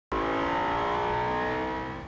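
A car engine running at a steady speed, its pitch sinking slightly as it fades out.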